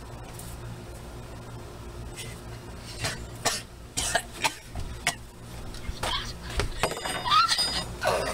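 A person coughing and sputtering on a dry mouthful of ground cinnamon. It begins about three seconds in as a run of short, sharp coughs, with a brief strained vocal sound near the end.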